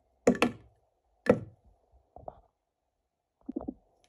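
Solid chocolate chunks dropped into an empty plastic blender jar, each landing with a sharp knock against the hard plastic and blade. Three loud knocks come in the first second and a half, followed by softer ones near the middle and near the end.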